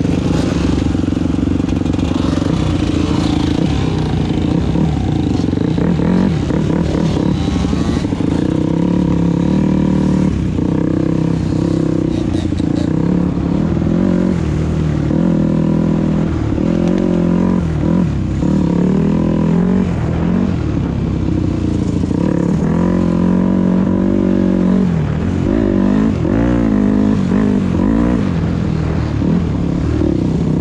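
Dirt bike engine heard from the rider's helmet while riding, revving up and down again and again as the throttle is opened and closed over rough ground.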